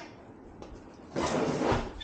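A heavy electric unicycle being lowered into a makeshift stand: a light click at the start, then a rough scraping rub lasting under a second, a little past halfway through.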